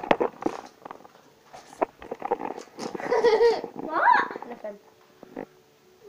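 Children's voices in a small room: indistinct shouts and a sharp rising squeal about four seconds in, with a few sharp knocks at the start.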